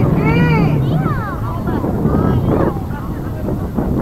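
Spectators shouting and calling out in rising-and-falling cries, loudest in the first second or so, over a steady low rumble of wind on the microphone.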